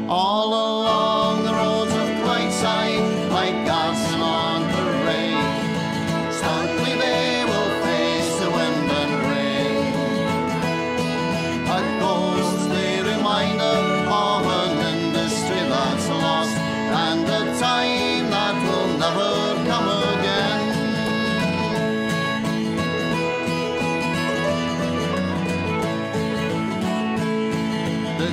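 A folk band playing an instrumental break between sung verses: guitar, banjo, hammered dulcimer and whistle together, with a steady stream of plucked and struck notes under a sustained melody.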